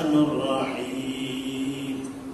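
A man's voice chanting Arabic Quranic recitation in a melodic style, drawing out one long held note that fades near the end.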